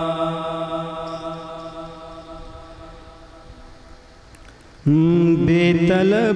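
A male voice sings a naat unaccompanied through a microphone: a long held note fades slowly away over about four seconds, then a loud new phrase begins near the end with a wavering, ornamented melody.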